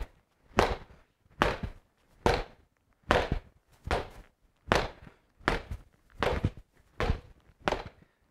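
Boxing gloves punching the dense foam-filled ball of an Everlast Hyperflex Strike reflex bag: about ten single thuds at an even pace of just over one a second. The pace is set by the bag's slow rebound on its bottom spring, which "just doesn't rebound quick enough" for fast combinations.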